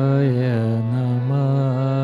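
A man chanting a Hindu mantra in one long, held tone that wavers gently in pitch.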